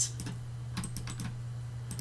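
A few light computer keyboard keystrokes in small scattered clusters, over a steady low hum.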